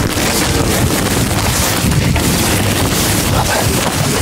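Steady, loud supermarket background noise with indistinct voices in it.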